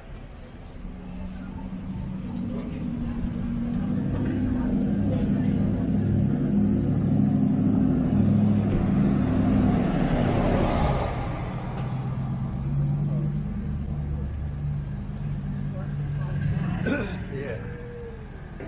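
A pickup truck driving slowly past at close range: its engine hum builds, passes closest about ten seconds in with a rush of tyre noise, then falls back to a lower engine hum for the rest.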